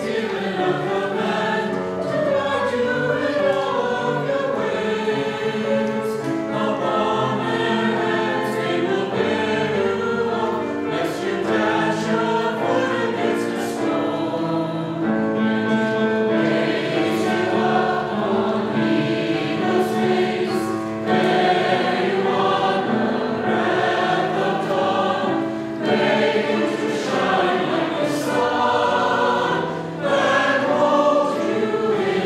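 Mixed choir of men's and women's voices singing, with held notes moving through changing chords.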